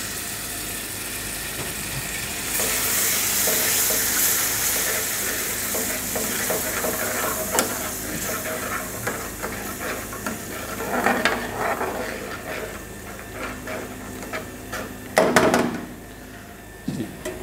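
Red sauce sizzling in a hot metal frying pan of oil and sautéed garlic over a gas flame, while a metal spoon stirs and scrapes it around the pan. The hiss grows louder about two and a half seconds in and slowly eases off later.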